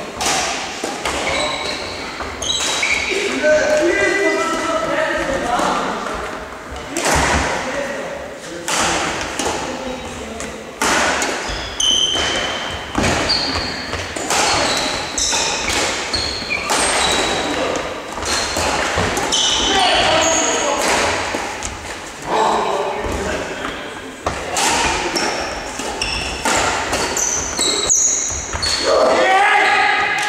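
Badminton play in a large sports hall: sharp racket-on-shuttlecock hits, about one or two a second, each followed by a hall echo, mixed with short high squeaks of shoes on the court floor and players' voices.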